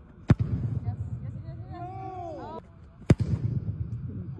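Two sharp thumps of a boot striking an American football off a kicking tee, one just after the start and one about three seconds in. A faint voice calls out between them over the low hum of a large indoor hall.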